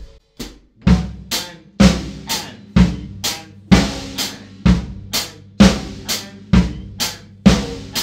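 Maple drum kit playing a slow disco groove at about one beat a second: bass drum four on the floor, snare on two and four, and the hi-hat on the off-beat eighth notes between the beats. It starts just under a second in.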